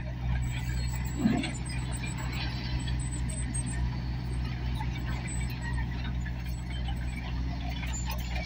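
Diesel engine of a Tata Hitachi Shinrai backhoe loader running steadily while it scoops and lifts a bucket of gravel, with a brief louder sound about a second in.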